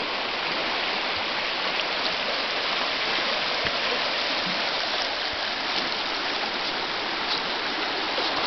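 The Savage River rushing over shallow gravel riffles: a steady, even rush of water.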